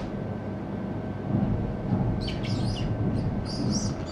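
A run of short, high chirps, like small birds calling, starting about halfway in, over low steady room noise.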